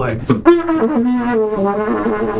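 Trumpet playing a short phrase of a few held notes that step up and down in pitch.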